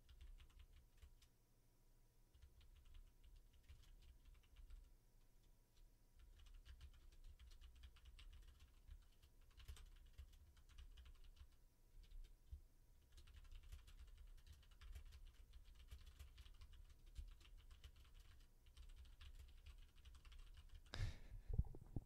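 Faint typing on a computer keyboard: runs of quick, soft key clicks with short pauses.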